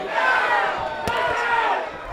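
Boxing crowd shouting, with one high raised voice calling out above the rest, and a single sharp smack about a second in.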